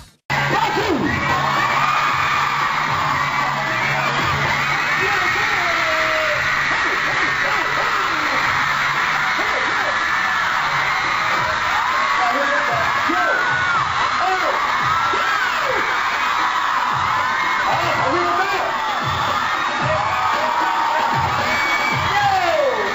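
A crowd cheering and screaming over loud music from speakers, in a live camcorder recording. The sound cuts in abruptly after a split-second dropout at the start.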